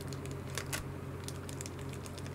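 Foil candy wrapper crinkling and crackling in the hands, a scattering of short irregular crackles over a steady low hum.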